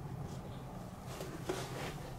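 Quiet room with a low steady hum and faint handling of small plastic toy parts, with one light click about one and a half seconds in.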